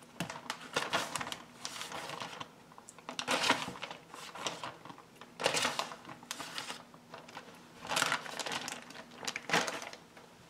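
Plastic zipper-seal bag crinkling and rustling as a hand reaches in and pulls out pieces of raw fish, in irregular bursts every second or so.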